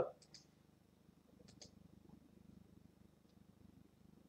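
Near silence: low room tone with a few faint, short clicks, two of them close together about a second and a half in.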